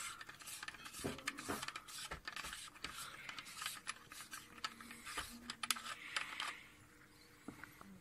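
Faint, irregular clicking and scraping of a metal threaded cap being unscrewed by hand from the rear port of a Meade ETX 125 telescope, dying away about two-thirds of the way through.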